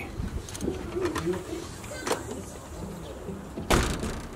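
A dove cooing a few times, soft and low. A short, loud thump comes near the end.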